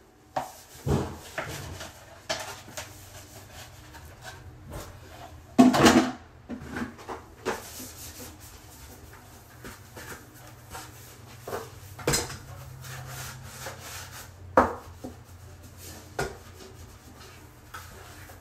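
Plastic child's potty being taken apart and wiped clean: rubbing on the plastic with scattered knocks and clatters as its parts are handled. The loudest clatter comes about six seconds in, with others around twelve and fourteen and a half seconds.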